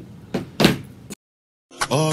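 Two short noisy knocks or bumps, the second louder, then the sound cuts to dead silence for about half a second before rap music starts near the end.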